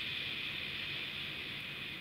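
Steady background hiss with no distinct event.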